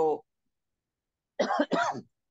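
Speech: a voice reading aloud in Telugu finishes a phrase, pauses for about a second, and starts again.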